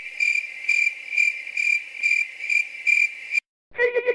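Crickets chirping sound effect: a steady high trill pulsing about twice a second, the stock comic 'crickets' for an awkward silence after a line gets no response. It cuts off abruptly near the end.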